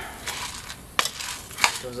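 Coffee beans being stirred in a skillet with a metal spatula, a steady rustle and scrape, with two sharp pops about a second and about a second and a half in: the beans reaching first crack, the sign the roast is well under way.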